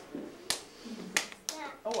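Several young children clapping their hands together overhead to snap bubbles: a few scattered sharp claps, about four over two seconds, with children's voices in between.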